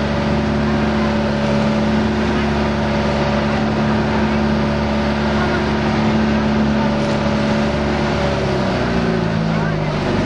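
Motorboat engine running steadily under way, with the rush of wind and water. It slows to a lower pitch near the end.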